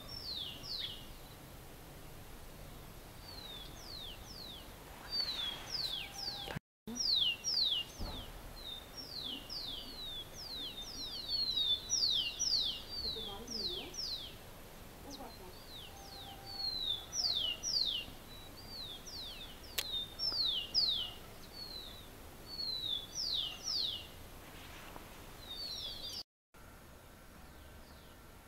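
Small birds calling in quick runs of short, high, sweeping chirps, in clusters every second or two.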